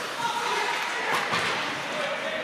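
Ice hockey play in an echoing rink: a few sharp clacks of sticks and puck over the scrape of skates, with voices calling in the arena.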